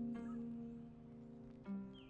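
Soft background music of held, sustained notes that fade gradually, with a new chord coming in near the end.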